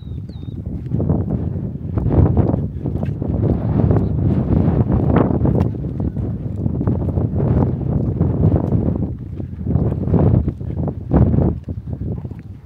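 Wind buffeting the microphone in uneven low gusts, over footsteps on a stone-paved path.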